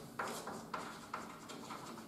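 Chalk writing on a blackboard: a few short scratchy strokes in the first second or so, then fainter.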